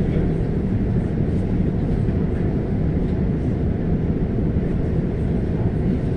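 Steady low rumble of a moving regional passenger train heard from inside the coach, with no distinct clicks or other events.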